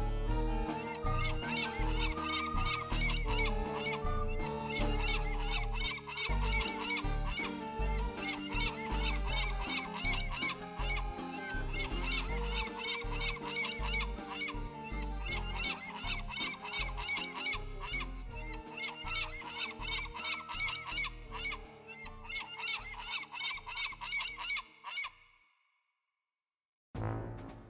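Cartoon bird-call sound effects for a flock of flying doves: spells of rapid, repeated calls layered over background music with held notes and bass. Everything fades out near the end.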